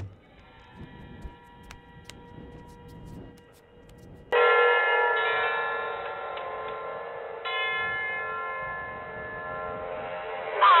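A heavy bell tolling on an old film soundtrack playing through a television, its upper range cut off. A loud strike comes about four seconds in and another about three seconds later, each ringing on as a chord of steady tones, after faint ringing and a few soft clicks.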